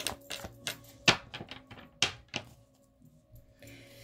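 A deck of tarot cards being shuffled by hand: a run of quick papery flicks and snaps, with a few sharper snaps about one and two seconds in, going almost quiet near the third second. Faint background music hums low underneath.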